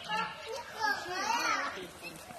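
Young goat kid bleating in high, quavering calls: a short call at the start, then a longer wavering one around the middle.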